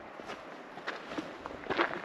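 Hiking footsteps on a rocky dirt trail: several uneven steps over a steady background hiss, the loudest step near the end.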